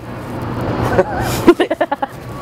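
Steady city traffic hum, then a burst of laughter, several quick ha-ha pulses, near the end.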